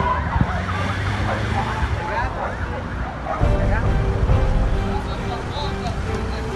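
Siren of a fire brigade rescue vehicle passing on a highway, mixed with people shouting.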